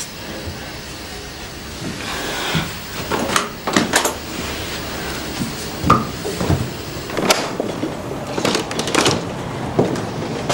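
A door and its rim-lock latch being handled: a scattered series of short knocks and clicks, the sharpest about six seconds in.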